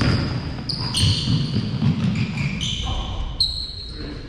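A basketball being dribbled on a hardwood gym floor, with the players' running footsteps.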